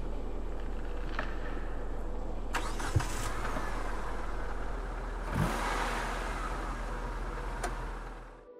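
Mitsubishi Lancer engine idling steadily, with a few light clicks and a brief swell of noise about five and a half seconds in.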